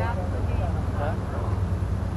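Faint, scattered voices of players and spectators calling out on the softball field, over a steady low rumble.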